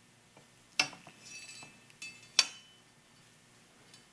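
Two sharp metallic clinks about a second and a half apart, the second louder, each with a short high ring, and light handling sounds between: the metal replica sword knocking against its display stand as it is handled.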